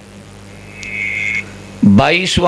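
A pause in a man's speech over a microphone, filled by a low steady hum. A short, thin, high tone sounds about a second in, and his voice starts again loudly just before the end.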